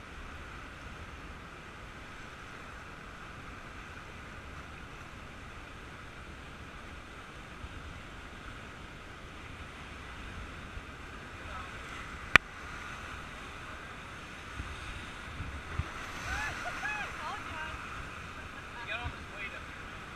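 Steady rush of fast whitewater heard from a raft on a river running high, with a single sharp click about twelve seconds in. Voices call out briefly near the end.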